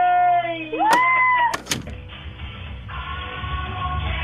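A small child's high-pitched voice: a held call that rises into a squeal, cut off by two sharp clicks about a second and a half in. Soft music starts near the end.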